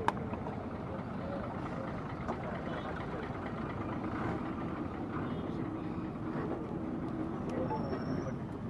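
Engine of a yellow earthmover idling steadily at a construction site, under low crowd chatter, with one sharp crack just after the start.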